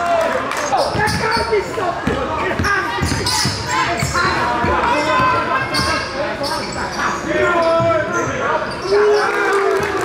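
A basketball bouncing repeatedly on a hardwood gym floor during live play, with voices calling out on and around the court.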